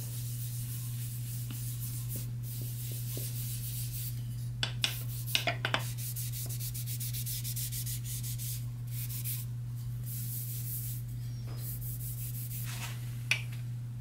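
A green pad rubbing walnut wax into a wooden spatula blade: repeated hissy scrubbing strokes over a steady low hum. A few short sharp clicks come about five seconds in, and one more near the end.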